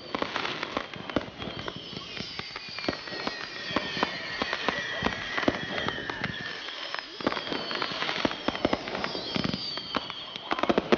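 Consumer fireworks cakes firing in rapid succession: a dense run of sharp pops and crackles, with high whistling tones sliding down in pitch over it.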